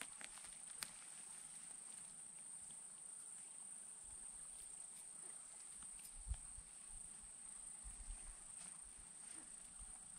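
Near silence: faint outdoor bush ambience with a steady thin high hiss, a soft click about a second in, and a few soft low thumps about six and eight seconds in.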